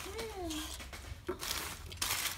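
Crumpled newspaper packing rustling as it is lifted out of a cardboard box, with a short hummed vocal sound in the first second.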